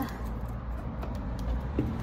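Wind buffeting the microphone, a steady low rumble, with a few faint footsteps or handling clicks from walking.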